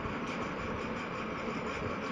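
Steady background noise: an even hiss with a low rumble and no distinct events.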